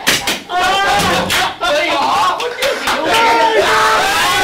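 Men laughing hard and shouting, with a few sharp knocks or slaps among the laughter.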